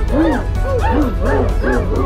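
About five short, dog-like yelps, each rising and falling in pitch, over background music.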